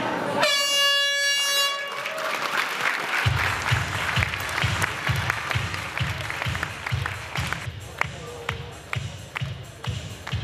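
An arena horn sounds once for about a second and a half, ending the MMA round. About three seconds in, arena music with a heavy, steady beat starts up over crowd noise and applause.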